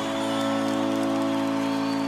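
Live grupero band music: one sustained chord held steady in the song's intro.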